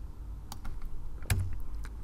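A few sharp clicks of computer keys, the loudest about a second and a half in, over a low steady hum.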